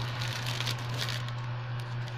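Plastic crinkling and rustling in irregular crackly bursts as baby items are pushed into a plastic bag, over a steady low hum.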